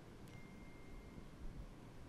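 Quiet room tone in a press-conference room, with a faint high steady tone lasting about a second early on.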